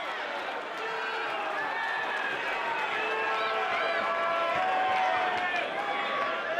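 Boxing crowd cheering and shouting after a knockdown, many voices overlapping, swelling slightly through the middle.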